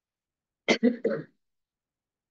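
A man briefly clearing his throat, three quick pulses about two-thirds of a second in.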